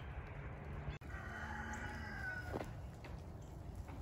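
A rooster crowing once, faintly, in one long call that starts a little after a second in and falls slightly at its end, over a low steady rumble.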